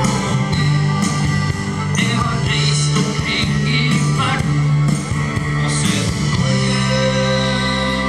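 A pop-rock song performed live through a PA: strummed acoustic guitar over a steady bass line.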